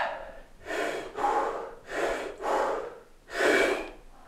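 A man breathing hard through the mouth under a heavy barbell during a set of back squats: five forceful breaths in quick succession, the last the loudest.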